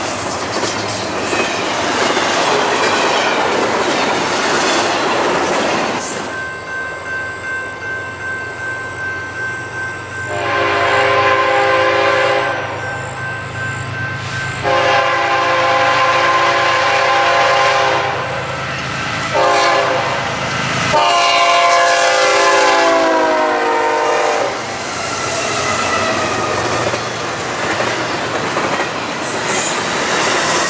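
Double-stack intermodal freight cars rolling past close by, wheels clacking over the rail joints. After a break, a diesel locomotive's air horn sounds long, long, short, long, the grade-crossing signal, over the rumble of the engines, dropping in pitch on the last blast as the locomotives pass. Then the stack cars roll by again.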